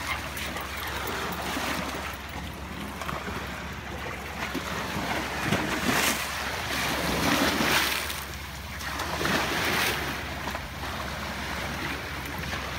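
Small waves breaking and washing over a rocky, pebbly shore, the surf swelling and falling back several times.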